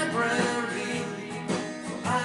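Acoustic guitar strummed as a country-rock accompaniment, the chords ringing and fading between sung lines, with a fresh strum about a second and a half in.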